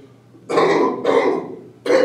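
A man coughing three times, loud and harsh: two coughs close together about half a second in, then a third near the end.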